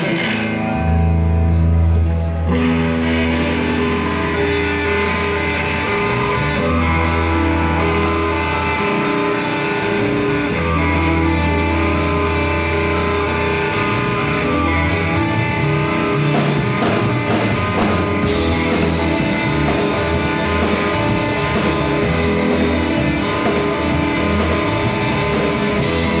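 Live rock band playing: electric guitars over sustained low bass notes, with the drum kit's cymbals coming in about four seconds in.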